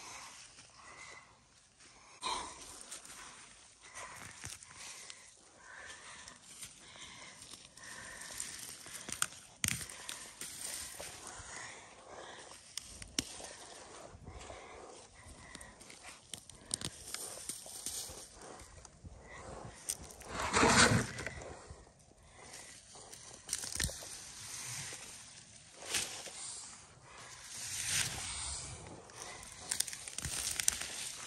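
Hands digging in loose, dry garden soil and handling sweet potato vines: scattered scrapes, crackles and soft knocks, with one louder rustling burst about two-thirds of the way through.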